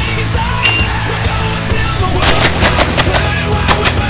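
A quick string of pistol shots, about eight in under two seconds, starting about halfway through, over rock music.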